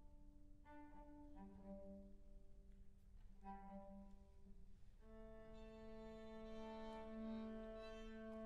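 Live chamber music from a quartet of violin, cello, clarinet and piano, played softly: slow, held notes and chords, growing fuller and a little louder about five seconds in.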